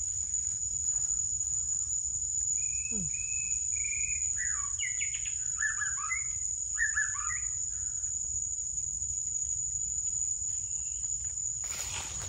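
Steady high-pitched drone of forest insects, with a bird singing a run of short whistled notes, some sliding downward, for several seconds in the middle. A low steady rumble runs underneath.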